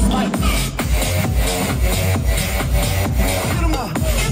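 Electronic dance music with a steady, driving kick drum, mixed live by a DJ on Pioneer CDJ decks and a mixer.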